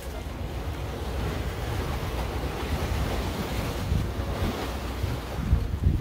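Wind buffeting the microphone with the wash of the sea behind it, with stronger gusts near the end.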